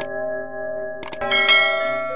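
A struck bell rings on with many steady tones. Over it, a mouse-click sound effect comes at the start and a double click about a second in, as for a subscribe button. A bright chime is struck just after the clicks.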